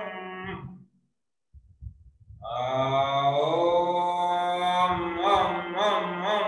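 A man chanting a mantra in a long, held tone; it fades out within the first second, and after a short silence a new long chant begins. Near the end it turns into quick repeated syllables.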